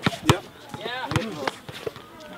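Basketball dribbled on a hard court: a few sharp, irregularly spaced bounces, the strongest near the start and just past the middle.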